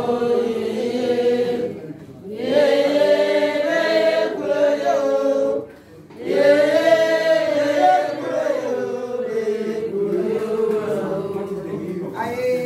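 A group of voices singing together without instruments, in long held phrases with two short breaks, about two and six seconds in.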